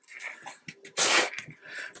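Double-sided craft tape being pulled off its roll and laid along a frame edge, with a short, loud ripping rustle about a second in.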